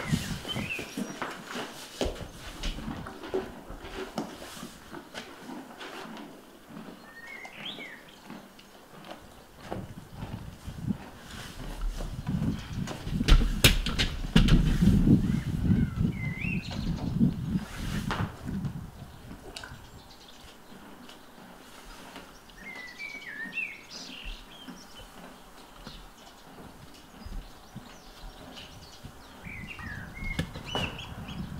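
Horse eating hard feed from a flexible rubber feed tub: chewing and the muzzle knocking and shoving the tub, with a louder stretch of knocks and rustling for several seconds near the middle. Small birds chirp briefly a few times.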